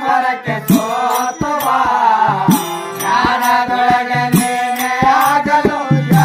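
Kannada devotional bhajan. A harmonium holds notes under a sung melody, and tabla strokes keep the rhythm.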